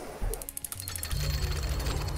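Title-card transition sound effect over background music: a quick burst of rapid mechanical clicking, then a low steady hum from about halfway through.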